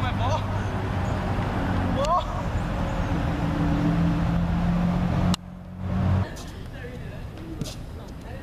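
Road traffic: car engines running steadily as vehicles pass, with two short rising calls from a person's voice. About five seconds in the sound drops abruptly to a quieter outdoor background.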